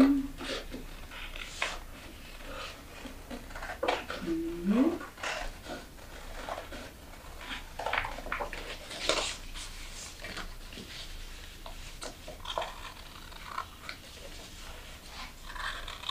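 Large sheets of paper rustling as they are handled, with intermittent snips of scissors cutting them. A short hummed voice sound about four to five seconds in.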